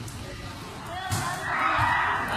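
A volleyball thumps once about a second in, followed by a softer thud, while children's voices call out across the court.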